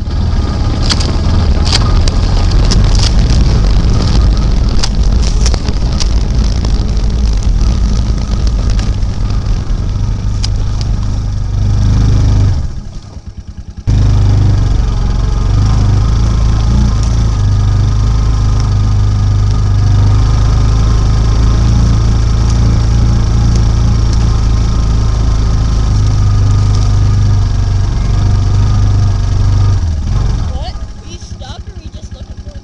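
Engine of a side-by-side utility vehicle running under way, heard up close from the vehicle's front, with scattered clicks and knocks in the first several seconds. The sound drops out abruptly for about a second and a half around 13 seconds in, then the engine resumes steadily.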